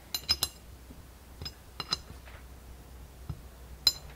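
Small steel alignment pin clinking and tapping against the holes of a machined aluminium part as it is fitted. Light metallic clicks with a brief high ring: three close together at the start, a pair around the middle and single ones near the end.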